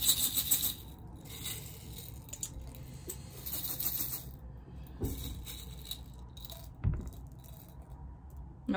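Small letter beads rattling inside a glass jar as it is shaken in several bursts, then a couple of sharp knocks in the second half as the jar and beads come down on the table.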